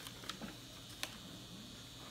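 Quiet handling of tissue paper and packaging in a cardboard box: faint rustling with a couple of small clicks, the clearest about a second in.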